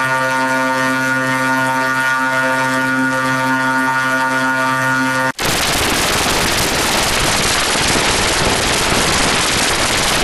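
A steady, buzzy electronic tone with many overtones, held on one pitch for about five seconds. It cuts off suddenly into loud, even static-like hiss.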